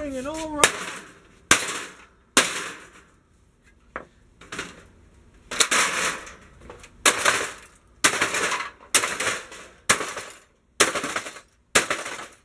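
Sledgehammer repeatedly smashing an Apple G3 computer tower's metal case and circuit boards: more than a dozen sharp blows, about one a second, each trailing off briefly. A short voiced sound right at the start.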